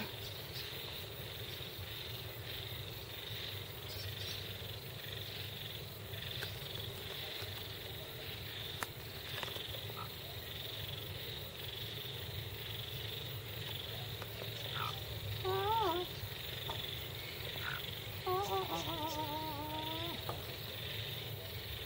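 A pet hen giving soft, wavering trills, a short one near the end and a longer one just after, over steady background noise with a high, even hiss.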